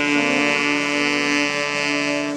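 A street wind band of saxophones and brass playing, holding one long sustained chord.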